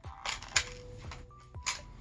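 A few sharp clicks and snaps of a Kydex inside-the-waistband holster and its Ulti clips being pulled off the waistband of gym shorts, the loudest snap about half a second in, with another near the end.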